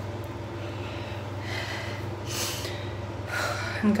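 A woman breathing heavily, with two audible breaths in the middle and near the end, over a steady low hum; she is shaking and worn out from 117-degree heat.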